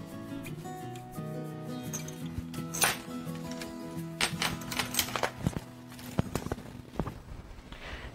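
Quiet background music with held notes, over a few sharp clicks and knocks from carbon-fibre drone arm pipes and fittings being handled and fitted together.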